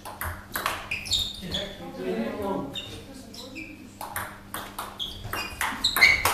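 Table tennis ball clicking off paddles and the table during a rally: a run of sharp, irregularly spaced taps, with voices talking over them.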